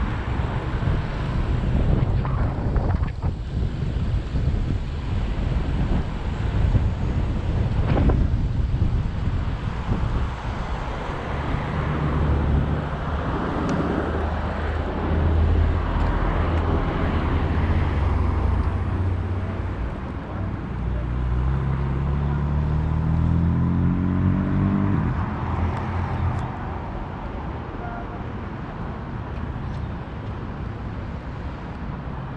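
City traffic heard from a moving bicycle, with wind rumbling on the microphone. A car engine runs close by in the middle stretch, and about two-thirds of the way through a vehicle revs up with rising engine pitch that stops abruptly.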